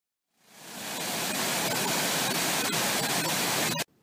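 Shallow surf foaming and rushing over a stony shore, close up: a steady hiss that fades in over the first second and cuts off abruptly just before the end.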